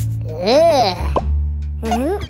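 Light background music with a steady bass line. Over it, a cartoon character makes a wordless voice sound that rises and falls in pitch, followed by a short upward blip. Another similar voice sound starts near the end.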